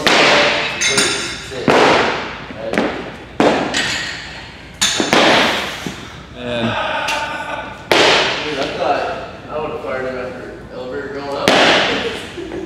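Loaded barbells with rubber bumper plates hitting lifting platforms: a series of heavy thuds with ringing plate clatter, about seven over the stretch. The loudest come at the start, around the middle and near the end.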